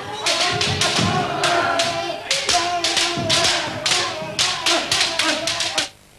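Kendo sparring: rapid clacks of bamboo shinai striking each other and the armour, with stamping feet and long shouts (kiai). It cuts off abruptly near the end.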